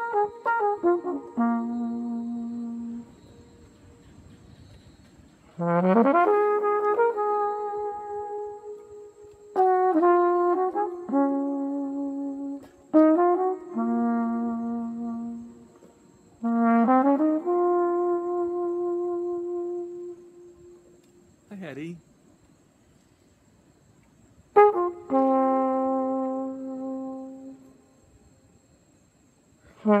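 Solo flugelhorn playing slow phrases of long held notes, several scooped up into from below, with short pauses between phrases.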